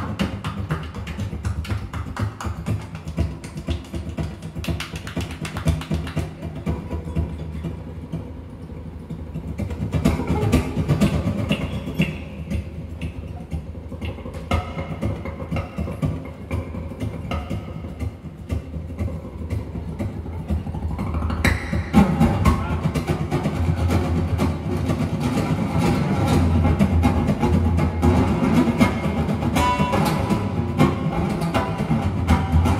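Live acoustic music: two acoustic guitars with hand percussion. Dense tapping at first thins to a quiet stretch, then builds to fuller playing with deep low notes from about two-thirds of the way in.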